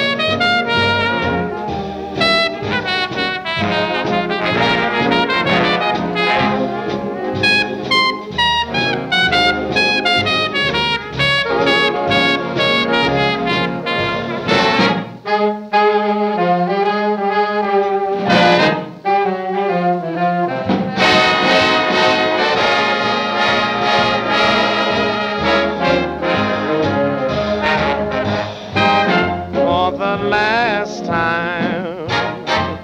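Swing-era big band playing an instrumental passage on an old recording, trumpets and trombones to the fore with saxophones beneath. About halfway through, the bass and drums drop out for a few seconds while the horns hold long notes, then the full band comes back in.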